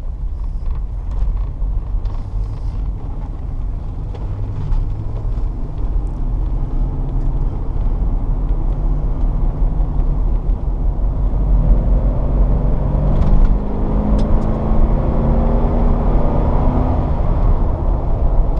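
A 1999 GMC Suburban's 5.7-litre V8 and road noise heard from inside the cab as the truck accelerates from low speed up to highway speed. There is a steady low rumble, and the engine note rises in pitch during the second half as the truck picks up speed.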